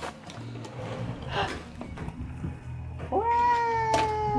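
A single long, high-pitched call begins about three seconds in. It is held at a nearly steady pitch that sinks slightly, and lasts about a second and a half.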